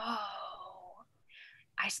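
A woman's drawn-out, sigh-like hesitation sound lasting about a second while she thinks over a question, then a short breath before she starts to speak.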